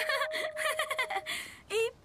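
A woman giggling in short bursts of laughter over the last held note of a children's song, which fades out partway through, followed by a brief vocal exclamation near the end.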